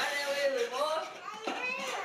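A voice speaking or vocalising indistinctly, with one short sharp knock about a second and a half in.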